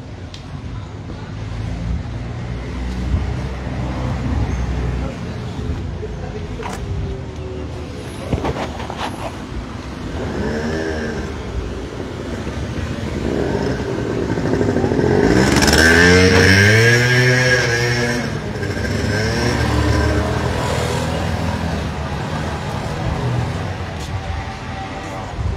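A motor scooter passing close by: its engine swells to loudest about sixteen seconds in and then fades, over a steady street rumble.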